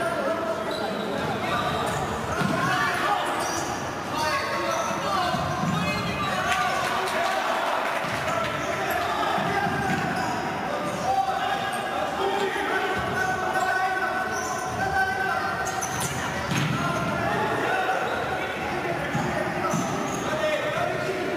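A futsal ball being kicked, passed and bouncing on an indoor court, the knocks echoing in a large sports hall, with players' and spectators' voices calling out throughout.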